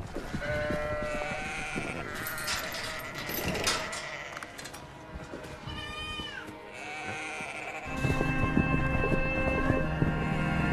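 Penned farm livestock bleating several times, with a clatter of the flock moving about. A low, dark film score comes in about eight seconds in and is louder than the animals.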